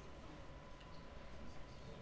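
Quiet room tone: a low rumble with a faint steady hum and a few faint ticks, with no speech.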